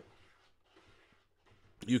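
Near silence: faint room tone, with a man's voice starting again near the end.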